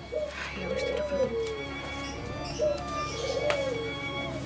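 A dove cooing: several separate coos in a row, each gliding up and then down, over faint sustained background music.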